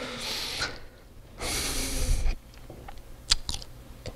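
A man breathing in and out twice close to a headset microphone, each breath a soft hiss lasting under a second, then a few small mouth clicks near the end.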